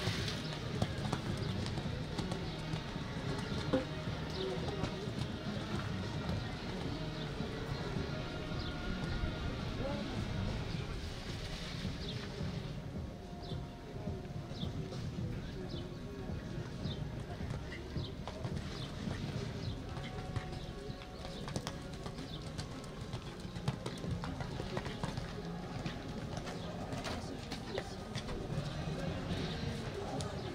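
A show-jumping horse cantering and jumping on a sand arena, its hoofbeats on the footing, over a steady background of distant voices and music, with birds calling.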